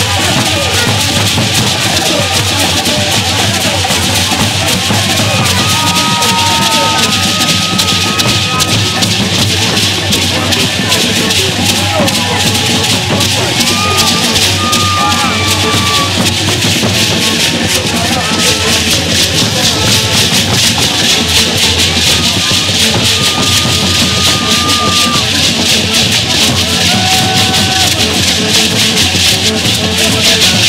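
Many gourd rattles shaken together in a dense, steady rhythm, with drumming and people's voices over it. There are a few short held high notes.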